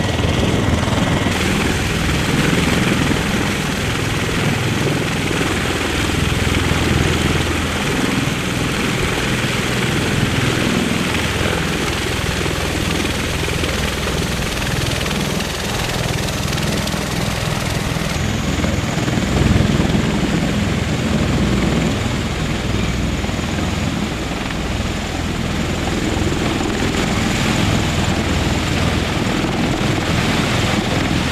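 MV-22B Osprey tiltrotors in helicopter mode, their twin proprotors and Rolls-Royce turboshaft engines giving a steady, loud rotor noise heavy in the low end, its tone changing slightly a couple of times.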